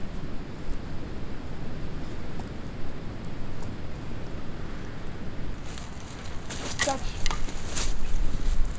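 Steady low wind rumble on the microphone. From about six seconds in, there is a run of crunching rustles from dry leaves underfoot, with a brief vocal sound among them.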